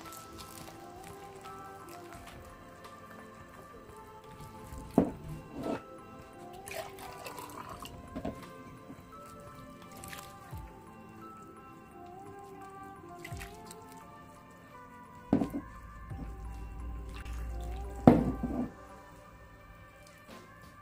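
Soft background music, under water being poured from a jug into a bowl of flour and a hand mixing the wet flour into dough, with a few brief louder knocks.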